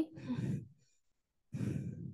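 A woman's breathy sighs into the microphone: one just after a spoken word, then another about a second and a half in, with a short silence between.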